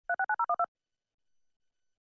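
Six quick DTMF touch-tone beeps in rapid succession, each a short two-note tone like a telephone keypad being dialled.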